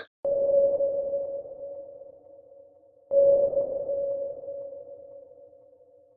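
Two sonar-like electronic pings, the second about three seconds after the first. Each is one clear mid-pitched tone that starts suddenly and fades slowly.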